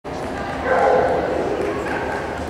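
A dog barking, with people's voices around it; the loudest call comes about half a second in.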